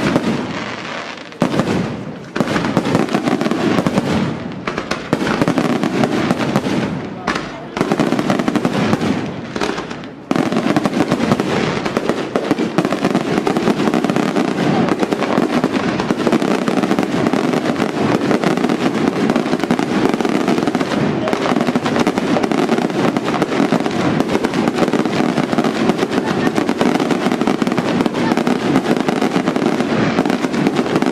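Aerial fireworks display: rapid shell bursts and crackle, with a few brief lulls in the first ten seconds, then an unbroken dense barrage from about ten seconds in.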